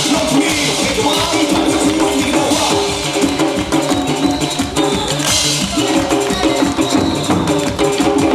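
Music with loud drumming: sticks striking barrel drums and a cymbal in a fast rhythm, over sustained pitched backing music.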